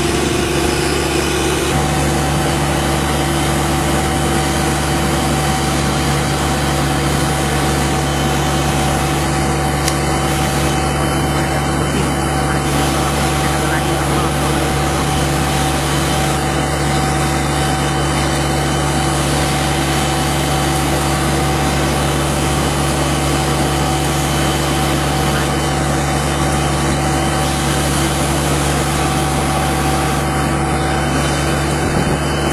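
Diesel-engined street sweeper running steadily: an even engine drone with a few held tones under a broad hiss. The tones shift slightly about two seconds in.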